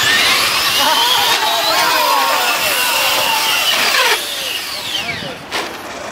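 Several radio-controlled cars' motors whining together, the pitch rising and falling with throttle as they race down a concrete slope. The whine cuts off suddenly about four seconds in.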